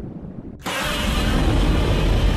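A loud edited-in sound effect: a dense burst of noise with a deep rumble that comes in suddenly about half a second in and holds steady.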